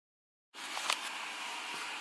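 Half a second of dead silence at an edit, then faint, steady room hiss with a small click just under a second in.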